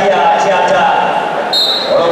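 Continuous chatter of voices in a sports hall. Near the end comes a short, shrill blast of a referee's whistle, the signal that restarts the wrestling bout.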